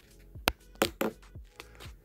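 Soft background music with a light beat, cut through by a few sharp clicks, the loudest about half a second in.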